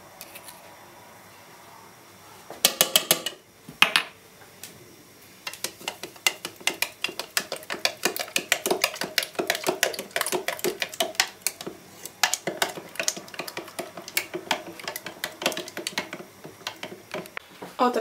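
A long plastic spoon stirring yeast into water in a plastic measuring jug, with quick, rapid clicks and taps as it knocks against the jug's sides; a few taps come early, and the fast stirring runs from about five seconds in until near the end.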